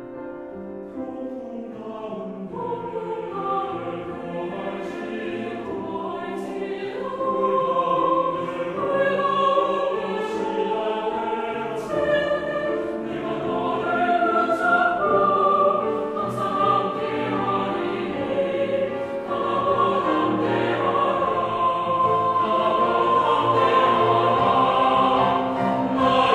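Chamber choir singing a sacred choral anthem in several parts with keyboard accompaniment, growing louder about seven seconds in.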